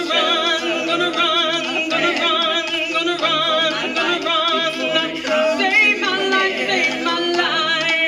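An all-female a cappella vocal ensemble singing in harmony, with no instruments. Several voices hold long notes with a strong vibrato over a sustained low bass line.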